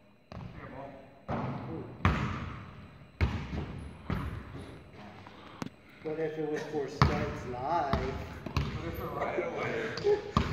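Basketball bouncing on a hardwood gym floor, each bounce echoing in the large hall: single bounces about a second apart at first, then dribbling. Voices join in the second half.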